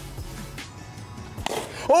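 Background music, with a single sharp crack about one and a half seconds in as a plastic bat hits a Blitzball.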